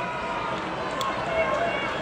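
Large arena crowd: many voices talking and calling out at once in a steady din, with one sharp click about a second in.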